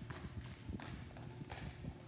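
A series of soft, irregular knocks and taps, several a second.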